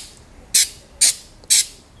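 Aerosol can of Krylon True Seal rubberized sealant sprayed in three short hissing bursts about half a second apart.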